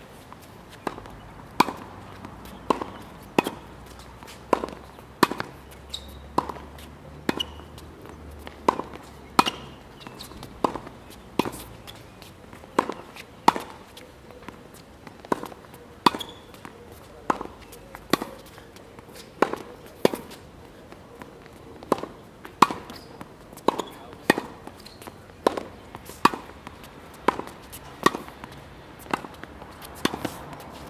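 Tennis rally on a hard court: a steady run of sharp pops from racket strikes and ball bounces, about one a second.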